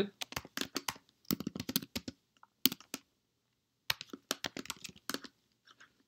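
Typing on a computer keyboard: quick irregular key clicks in bursts, with a pause of about a second midway.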